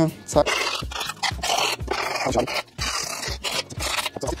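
Grip tape on a skateboard deck being rubbed hard along the deck's edge with a hand tool: a run of rasping strokes about a second apart that score the tape's outline so it can be trimmed with a cutter.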